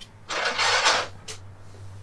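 Bedside window curtain being slid along its overhead track: one swish of fabric and runners lasting under a second, followed by a brief light click. A steady low hum runs underneath.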